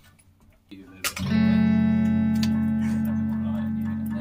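Electric guitar: one chord strummed about a second in and left ringing, slowly fading.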